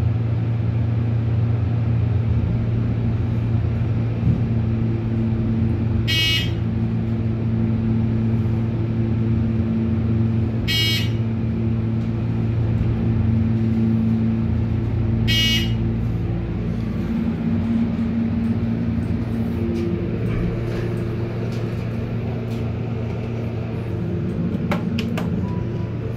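Hydraulic elevator car rising, with a steady low hum from the hydraulic pump drive the whole way up. Three short electronic beeps sound about four and a half seconds apart, in step with the car passing floors. The hum shifts in pitch after about two-thirds of the way through as the car slows to level, and a few clicks come near the end as the doors open.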